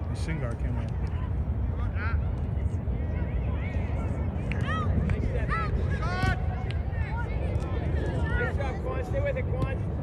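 Scattered shouts and calls from players and people on the sideline of a youth soccer game, over a steady low rumble.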